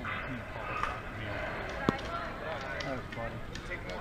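One sharp knock of a softball pitch arriving at home plate about two seconds in, over the chatter of players and spectators.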